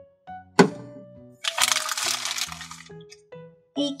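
A sharp click of hard plastic toy pieces knocking together, then about a second and a half of crinkling clear plastic wrapping, over soft background music.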